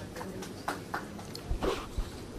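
Scattered sharp clicks, a few a second, with a low thump about one and a half seconds in.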